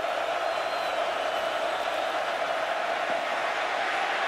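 Large football stadium crowd cheering, a steady wash of noise that holds at one level throughout.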